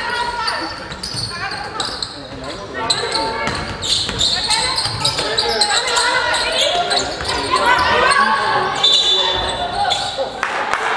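Basketball game play in a large sports hall: a basketball bouncing on the wooden court, with indistinct voices calling out and echoing in the hall.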